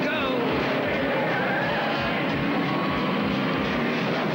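Vehicle engine noise from a highway pursuit, mixed with a film soundtrack song with a steady beat and a singing voice.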